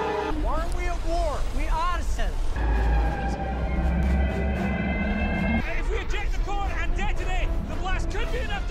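Sci-fi film soundtrack: music over a deep rumble, with swooping rising-and-falling tones in the first two seconds and again from about six seconds on, and a sustained chord held in between.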